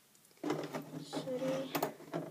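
A girl's voice speaking, starting about half a second in after a moment of quiet room tone.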